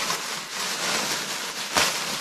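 Thin plastic bag of yarn rustling and crinkling as it is handled and pulled from a cardboard box, with a sharper crackle near the end.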